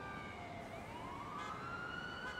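Faint siren, one slow wail rising in pitch from about half a second in.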